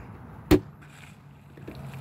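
A single sharp click about half a second in, over a faint steady hum.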